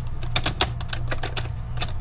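Computer keyboard typing: irregular key clicks over a steady low hum.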